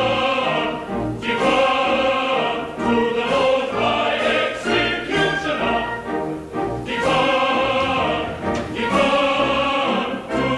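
Men's chorus singing an operetta number in phrases, with theatre orchestra accompaniment.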